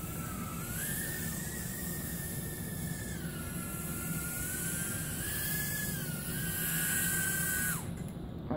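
JJRC H36 micro quadcopter's motors and propellers whining steadily in flight, the pitch wavering up and down, then cutting off suddenly near the end.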